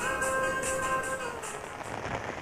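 Intro title music: a held chord over a steady beat of light high ticks, fading out in the second half.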